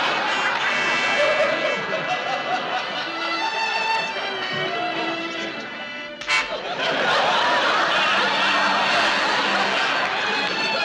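Background music of held, stacked tones, broken by a single sharp crack a little past six seconds in, after which the music turns fuller and busier.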